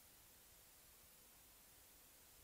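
Near silence: faint steady hiss of an old tape recording.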